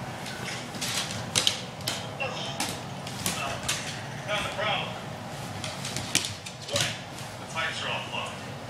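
Scuffling and sharp scratching clicks as a small dog paws and scrabbles at a person during rough play, the clicks coming irregularly, several to a second at times.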